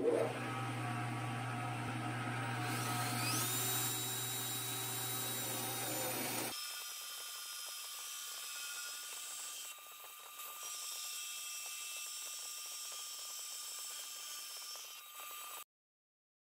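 Central Machinery 8x12 bench-top lathe running while a cutter shapes a spinning wooden dowel into a row of beads. There is a steady machine hum with a whine that rises in pitch about three seconds in. The sound changes abruptly about six seconds in to a quieter, steadier run, and stops suddenly just before the end.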